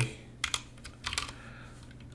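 Typing on a computer keyboard: a short run of keystrokes about half a second to a second and a half in, then quieter.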